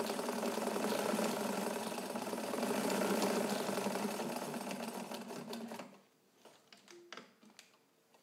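Early-1950s Necchi BU Nova sewing machine running fast, stitching a tight zigzag through medium-heavy fabric, then stopping about six seconds in, followed by a few faint clicks.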